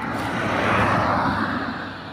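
A car passing by on a dirt road, growing louder to a peak about a second in, then fading away.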